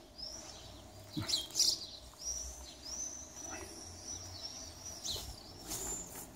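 Small birds chirping, with thin, high whistled notes held for a second or more at a time and a couple of louder short calls about a second in, over a low background rumble.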